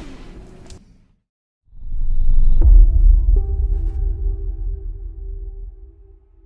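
Outro sound effect: after a short silence, a deep swelling rumble with a whoosh, joined by a few held musical tones that fade out near the end.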